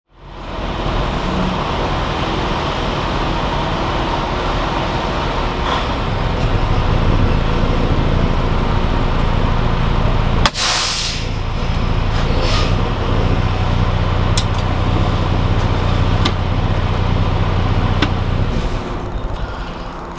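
Cab interior of a 2021 Freightliner Cascadia semi truck, with its diesel engine and road noise running steadily. About halfway through comes a short, loud hiss of air from the air brakes, after which a steady low engine hum remains.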